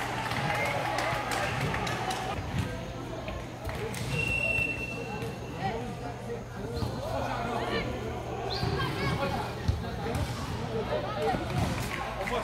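Boys' voices calling and shouting across an outdoor football pitch during play, with a few sharp thuds of the ball being kicked and a steady low hum underneath. About four seconds in, a single high steady whistle-like tone sounds for about a second and a half.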